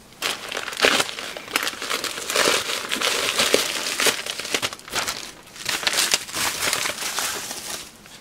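Plastic packaging crinkling and rustling as a plastic courier mailer is handled and a metallised anti-static bag is pulled out of it, with a sharp crackle about a second in.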